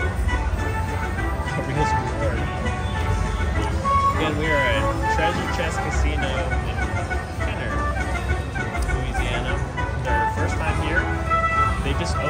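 Buffalo Gold Wheels of Reward slot machine playing its big-win celebration music and jingles while the win meter counts up, over the low hum and chatter of a casino floor.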